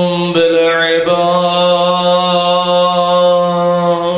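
A man's voice chanting a religious recitation in long, drawn-out notes at a steady pitch. Two short breaks come in the first second, then one long held note.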